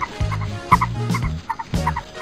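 Ostrich call sound effect: a run of short repeated bird calls over a background music beat.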